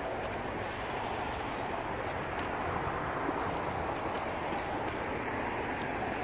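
Steady outdoor background hiss of wind and distant traffic, with faint light ticks of footsteps as a person and a dog walk across wooden boards and onto brick paving.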